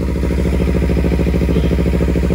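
Kawasaki Z300's parallel-twin engine idling steadily on the stand.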